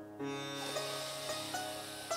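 Soft instrumental background music: plucked sitar-like string notes over a steady drone.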